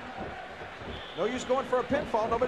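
Wrestling broadcast audio playing quietly: an arena crowd's noise, with a commentator's voice coming in about a second in and a couple of sharp thumps.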